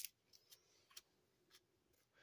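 Near silence with a few faint, short clicks of plastic-sleeved trading cards being handled and slid through a stack in the hands.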